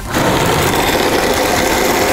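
Oster countertop blender switched on and running steadily, its blades crushing ice and pineapple chunks into a smooth frozen drink.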